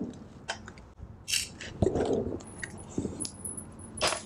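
Handling noise from a handmade paper journal: paper rustling with scattered light clicks and taps as a ribbon is threaded with a needle through holes in its spine.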